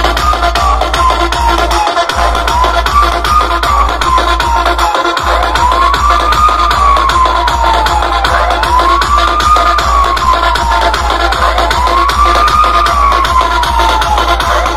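Loud electronic dance music played through a large DJ speaker stack, with a heavy bass beat that cuts out briefly twice in the first five seconds. A siren-like tone rises and falls over it about every three seconds, stronger from about five seconds in.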